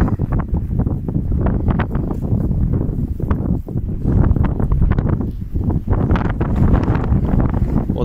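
Strong wind buffeting the microphone: a loud low rumble that rises and falls in gusts.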